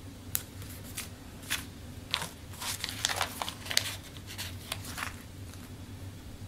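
Paper sticker strips being handled and pressed down onto a planner page with the fingertips: a run of small crackles and taps, thickest in the middle.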